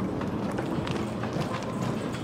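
Footsteps of people walking on a paved concrete path: a steady run of light clicks and scuffs.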